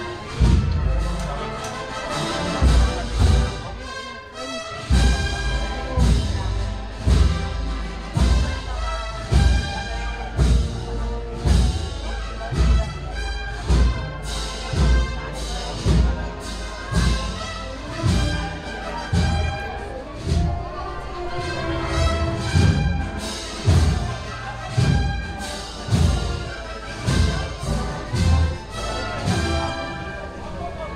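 A wind band playing a slow processional march: brass and woodwinds over a bass drum beating about once a second.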